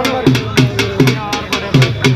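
Drum-led music with a fast, steady beat of about four strokes a second over deep drum notes, with a brief sung or sampled voice line about a second in.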